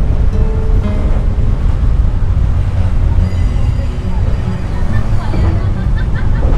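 Wind buffeting the microphone over the steady low rumble of a train running across a sea bridge, with background music faintly underneath.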